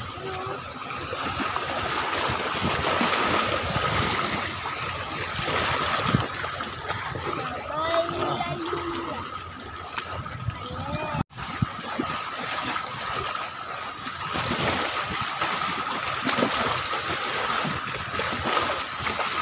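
Seawater splashing and lapping against a rocky shore, with a steady hiss and a faint, steady high tone under it.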